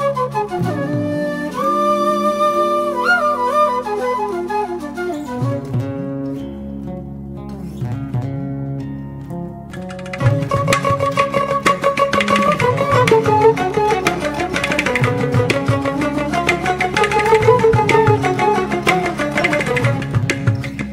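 Instrumental background music: a flute-like melody gliding over a steady low drone. About halfway through it grows louder and busier, with quick plucked-string notes.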